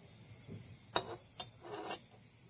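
Metal spoon stirring curry in a pot: a sharp clink against the pot about a second in, a second lighter one soon after, then a short scrape near the end.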